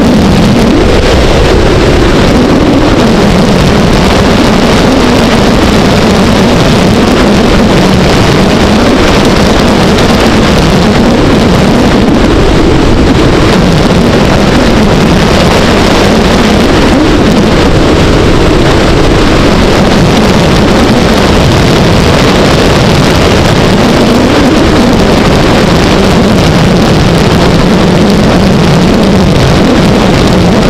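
Motorcycle engine running at road speed, its pitch rising and falling slowly with the throttle, under loud wind noise on the microphone.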